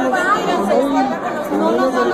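Several people talking over one another: indistinct, overlapping crowd chatter.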